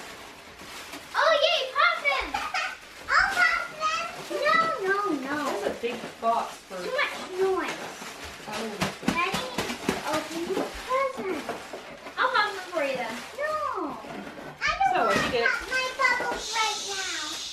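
Children talking and exclaiming in high voices, with some crinkling of plastic packaging as a cardboard box is unpacked.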